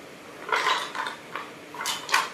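Wooden blocks clattering against each other and a small wooden box as a macaque rummages through them by hand, in a few short bursts of knocking.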